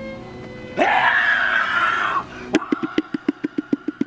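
A man's voice giving a loud, drawn-out dramatic scream in a manga read-aloud performance. About two and a half seconds in, after a sharp click, comes a rapid run of short, sharp vocal bursts, about eight a second.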